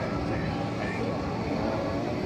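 Outdoor crowd ambience: a steady low rumble with a murmur of indistinct voices.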